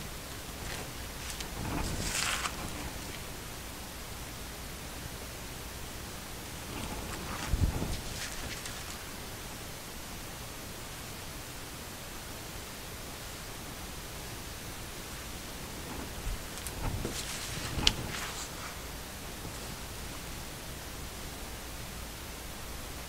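Steady low hiss of room tone, broken three times by brief faint rustles of gloved hands handling a paint-covered sheet: about two seconds in, about eight seconds in with a soft knock, and again around seventeen seconds in.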